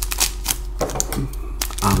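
Foil trading-card pack crinkling and crackling as it is handled, a run of irregular sharp clicks.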